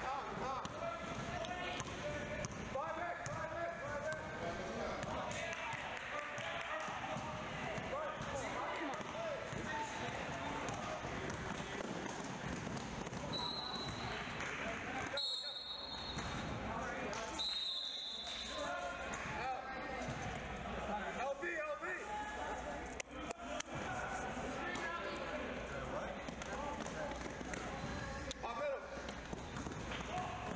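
A basketball being dribbled on a hardwood gym floor, with voices of players and onlookers. A few short, high-pitched squeaks come about halfway through.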